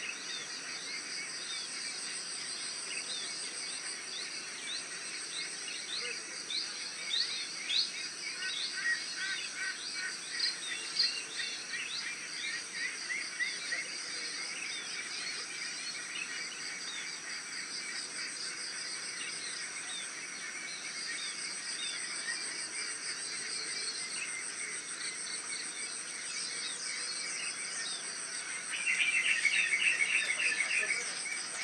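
Morning chorus of many small birds chirping over a steady, high, pulsing insect trill. Near the end a louder, rapidly pulsing call sets in close by.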